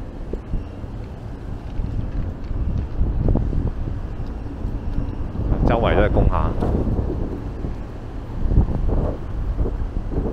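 Wind buffeting the camera's microphone, an uneven low rumble throughout, with a brief voice about six seconds in.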